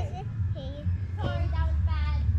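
A young child's voice singing in short, wavering phrases, over a steady low hum.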